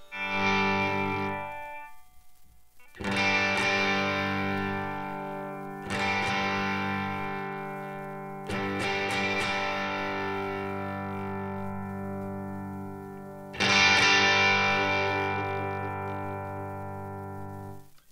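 Nash T-57 Telecaster-style electric guitar played through a Skreddypedals Screw Driver Mini Deluxe overdrive into a Morgan RCA35 amp: five chords strummed and left to ring out. The pedal's brilliance knob is swept through its range between chords, so the tone differs from chord to chord.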